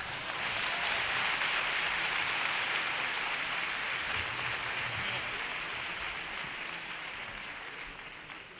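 Theatre audience applauding at the end of a sung number: the clapping swells at once, holds for a few seconds, then slowly dies away.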